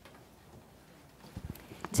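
Quiet room tone, then a few soft knocks and shuffles in the second half as people settle back into their chairs around the dais.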